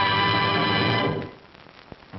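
Film soundtrack music holding a loud sustained chord of many steady notes, the closing chord, which dies away about a second in, leaving faint optical-track hiss and a small click near the end.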